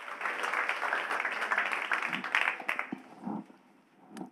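Audience applauding, starting suddenly and dying away after about three seconds.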